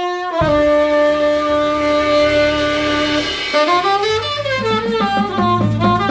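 Tenor saxophone playing a jazz intro: one long held note for about three seconds, then a phrase sliding up and down. Low bass notes come in underneath near the middle.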